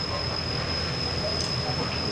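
Steady low hum and hiss under a constant high-pitched whine, with faint voices in the background.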